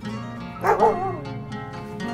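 A dog giving two quick barks about two-thirds of a second in, over steady background music.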